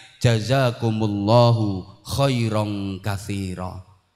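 A man reciting a short phrase, likely Arabic, into a microphone in a chanted delivery, with long held notes in three phrases.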